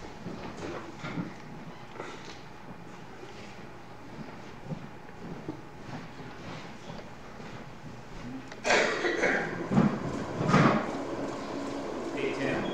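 Small knocks and handling sounds, then about nine seconds in a sudden, louder, uneven noise as the wood lathe switches on and the square wooden blank spins between centres.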